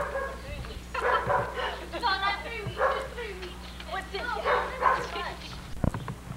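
A small puppy yipping and barking in bursts, mixed with high-pitched voices, and a sharp click near the end.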